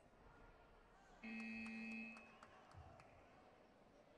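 Electronic time-up buzzer of the taekwondo scoring clock: one steady beep lasting about a second, starting about a second in as the clock runs out.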